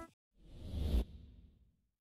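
A whoosh transition sound effect: a rush of noise that swells over about half a second, cuts off sharply about a second in, and leaves a short fading tail.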